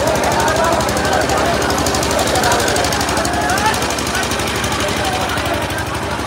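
Fast, unbroken drum rolls, several strokes a second, with many voices of a crowd shouting over them.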